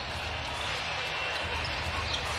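Steady background noise of a basketball arena during live play: an even, unbroken din from the crowd and the hall, with no single sound standing out.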